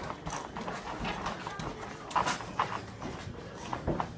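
A boxer's footwork on the ring canvas while shadowboxing: quick, irregular taps and shuffles of sneakers, the sharpest about halfway through.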